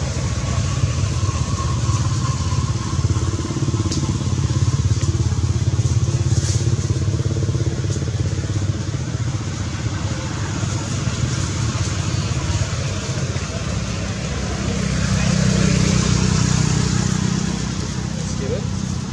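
A steady low engine drone, growing louder about fifteen seconds in.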